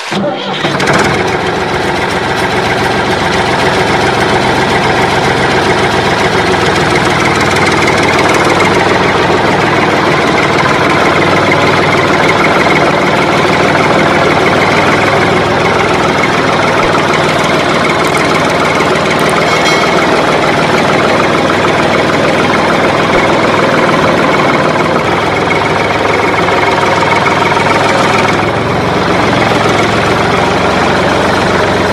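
Tractor engine starting and then running steadily at idle, laid over the pictures as a sound effect. It cuts in suddenly at the start.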